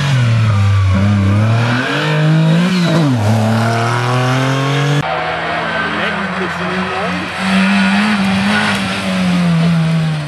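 Rally cars' engines revving hard on a stage, the pitch climbing and dropping through gear changes. About halfway through, a cut switches to another car running at a steadier pitch.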